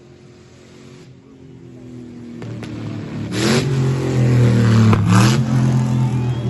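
Nissan Tsuru race car's engine revving hard as it drives up and past, growing louder, with two short hissing bursts about a second and a half apart.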